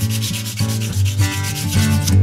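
Hand sanding the face of a spray-painted, carved wooden plaque with sandpaper in rapid back-and-forth strokes, taking the black paint off the surface while it stays in the carved letters. Background acoustic guitar music plays underneath.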